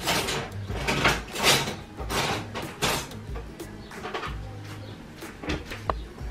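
Background music, with several short knocks and clatters in the first three seconds and a few more near the end, from kitchen things being handled.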